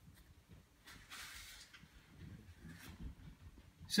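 Mostly quiet room, with one faint, brief soft rustle about a second in, like a paper page of a picture book sliding under the hand.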